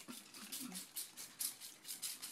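Plastic trigger spray bottle misting water onto hair, fired in rapid repeated squirts, about six a second.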